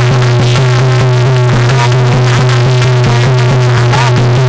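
A woman singing a bhajan over an electronic keyboard accompaniment, with a steady held bass note and a fast even beat.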